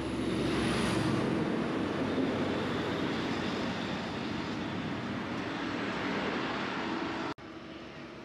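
Highway traffic noise from passing vehicles. It is loudest in the first second, then fades slowly and cuts off abruptly near the end.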